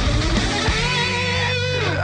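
Hard rock song. The pounding full-band beat drops out about half a second in, leaving held low notes under a sustained, wavering electric guitar line that bends down in pitch near the end.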